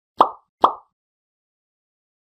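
Two short pop sound effects about half a second apart, of the kind that mark graphics popping onto the screen.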